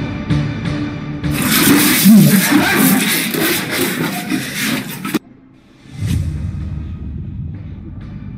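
Background music with a steady beat. About a second in, a loud rush of water is thrown from a bucket over a sleeping man, and he cries out as it hits. The rush cuts off suddenly about five seconds in, leaving the music.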